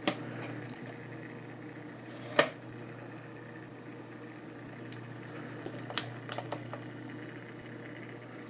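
Light clicks and taps of a plastic action figure being handled and repositioned by hand, the loudest about two and a half seconds in and another about six seconds in, over a steady low hum.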